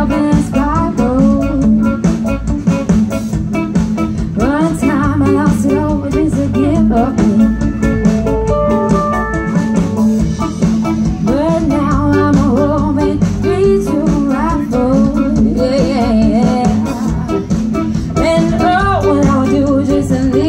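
A live rock band playing through a PA system. A woman sings the lead over electric guitars, bass guitar, keyboard and a drum kit.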